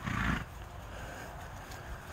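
A miniature horse gives one short, breathy snort right at the start.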